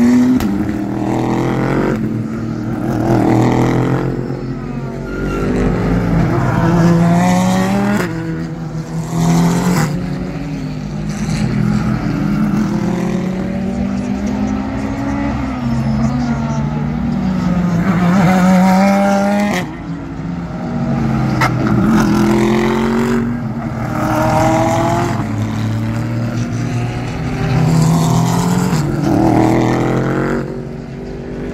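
Several GT race cars passing one after another through a corner, their engines revving up and down through gear changes as they brake in and accelerate out.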